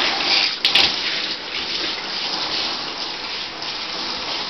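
Water spraying from a handheld shower head onto a wet dog's coat and the bathtub floor, a steady hiss of running water, with a brief click just over half a second in.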